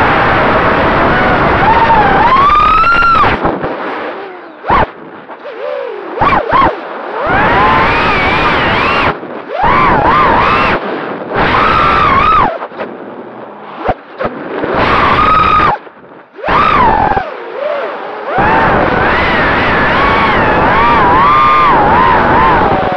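FPV racing quadcopter's brushless motors whining as it flies, the pitch gliding up and down with the throttle. The throttle is chopped several times to near silence and punched back up in short bursts, with wind rushing past the onboard microphone.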